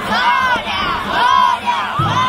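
A group of children pulling a danjiri float's rope shouting a chant in unison, one rising-and-falling call about once a second.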